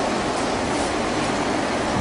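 Steady, even hiss with no other event: the background noise of the recording.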